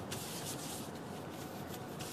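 Soft, steady rubbing and rustling of plastic-gloved hands rolling a ball of flaky pastry dough between the palms.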